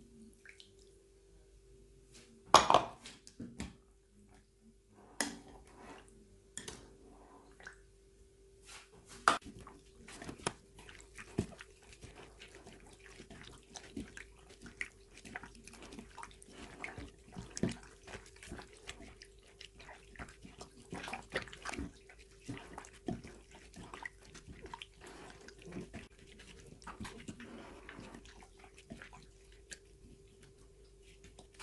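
Gloved hand mixing and squeezing sliced pork in a soy-sauce marinade in a ceramic bowl: irregular wet squelching, with a sharp knock about two and a half seconds in and a few more over the next several seconds, under a steady faint hum.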